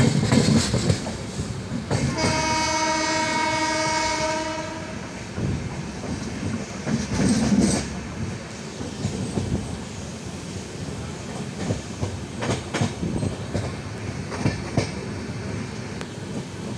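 Train running on the rails, heard from a carriage window: steady wheel and running noise with clicks from the track. About two seconds in, one steady train horn blast sounds for about three seconds.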